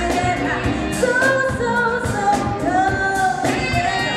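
Live soul band playing at a steady beat: drums and cymbals, electric guitar and saxophones, with long held melody notes and singing over them.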